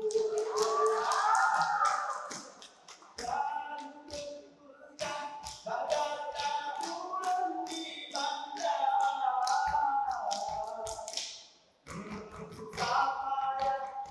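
A Saman dance troupe of kneeling men singing in unison without instruments while striking out a fast, tight rhythm of hand claps and slaps on their bodies. The sound dips briefly near the end, then the strikes come back densely.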